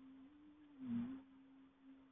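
Faint wordless humming: a person holds a low note that slides a little up and down, with a soft breath about a second in.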